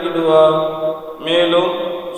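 A man's voice chanting a liturgical text into a microphone, holding each note for a long time, with a short break about a second in before the next held phrase.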